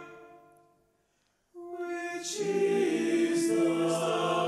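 A cappella male vocal ensemble singing. A held chord dies away in the hall's reverberation, followed by about a second of silence. Then voices come back in on a sustained note, lower parts join, and sung "s" consonants hiss twice.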